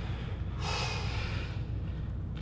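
A bodybuilder's forceful, hissing breath out while straining to hold a flexed pose, starting about half a second in and lasting about a second, over a steady low hum.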